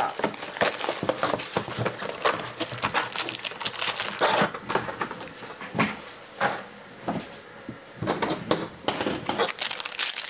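Irregular crinkling and rustling of a trading-card pack's shiny wrapper and its cardboard box as the pack is taken out and handled. It goes quieter for a couple of seconds past the middle, then the crinkling picks up again.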